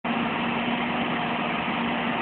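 A vehicle engine idling with a steady hum.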